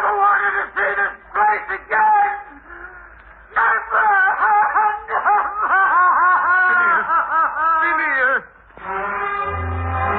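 A man's voice wailing in despair, in broken cries and then a run of quick rising-and-falling cries that climb higher and end in one long falling cry. Music comes in near the end.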